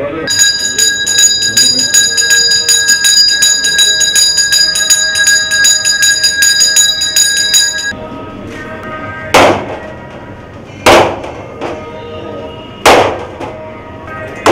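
A puja hand bell rung rapidly and without pause for about eight seconds, then stopping. Then three loud sharp cracks a second or two apart: coconuts being broken as an offering over a metal plate.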